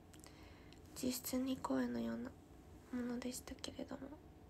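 A young woman's voice speaking in two short phrases, one about a second in and one about three seconds in.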